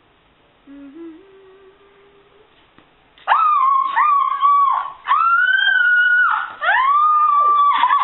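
A girl screaming: after a faint low hum, about three seconds in she lets out a series of four long, high, held screams, each sliding up at the start.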